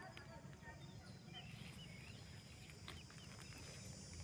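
Faint outdoor background: scattered short bird chirps over a low rumble and a steady high hiss.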